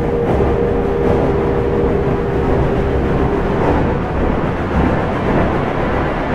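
Automatic pipe organ playing: a held chord that stops a little over halfway through, over a dense low rumble.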